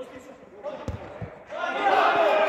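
A football struck with a sharp thud about a second in, then several men shouting loudly together from about a second and a half on.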